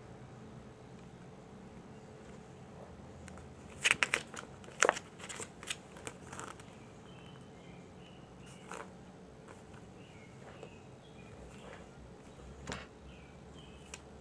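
Glossy paper pages of a CD booklet being handled and turned: a quick cluster of sharp crackles and snaps about four to six seconds in, then two single ones later, over a faint steady hum.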